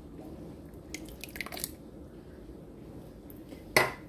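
Canned green enchilada sauce sliding out of the can and plopping quietly onto the stew ingredients in a ceramic crock pot. Near the end there is one sharp knock as the emptied metal can is set down on the tile counter.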